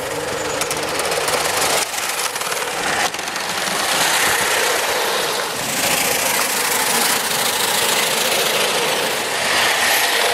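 1:32 scale butane-fired live steam locomotive running on track: a steady hiss of steam exhaust with the rattle of its wheels on the rails, growing louder as it comes close near the end.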